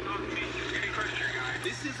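Indistinct speech in the background, over a steady low hum.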